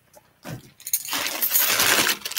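A plastic zip-lock bag full of costume jewellery being picked up and handled: the plastic crinkles while the beads, pearls and metal pieces clink and jingle inside, starting just under a second in.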